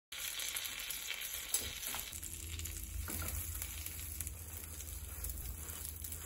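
Cheese-filled hanpen fish cakes frying in butter in a frying pan: a steady sizzle with fine crackling.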